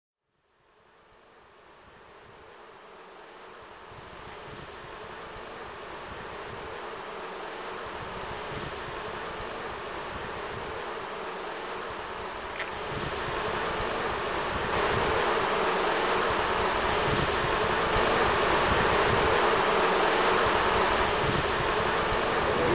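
Honeybees buzzing around their hives in a steady swarm drone, fading in from silence and growing gradually louder before holding steady.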